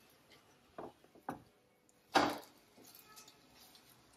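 Wooden spatula knocking and scraping against a nonstick frying pan as slices of egg-soaked bread are moved about: a few soft separate knocks, the loudest about two seconds in, with fainter light taps after it.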